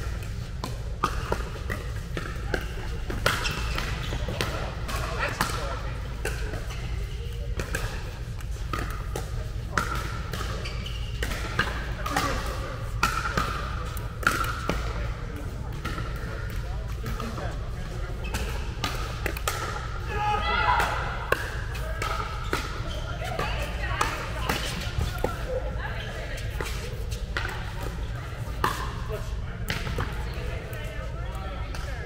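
Pickleball paddles striking the hard plastic ball and the ball bouncing on an indoor court: sharp irregular clicks and pops through rallies, echoing in a large hall over a steady low hum. Players' voices come in around the middle.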